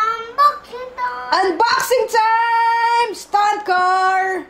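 A young child singing in drawn-out notes, with short sliding syllables between long held tones.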